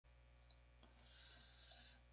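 Near silence: faint room tone with a steady low hum and a few faint clicks about half a second and one second in.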